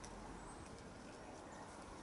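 Faint outdoor garden ambience: a low even background with a few short, faint high chirps from distant birds.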